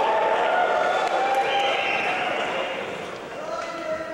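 Men's chorus singing long held notes in harmony, moving in steps from one chord to the next and getting softer near the end.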